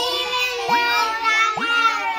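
A group of young children singing together in unison, with two brief rising glides over the voices, a little under and a little over a second in.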